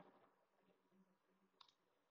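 Near silence, with one faint, brief click about one and a half seconds in.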